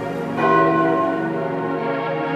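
A church bell struck once about half a second in, ringing on and slowly fading over background music.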